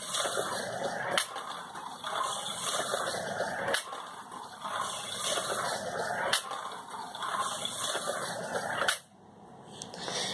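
Toy slot car running on a plastic track, its small electric motor whirring and the car rattling along, with a sharp click about every two and a half seconds. It cuts off about nine seconds in.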